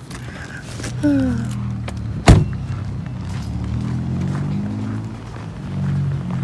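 A car door shut once, a single loud thud about two seconds in. A low steady sound runs under it.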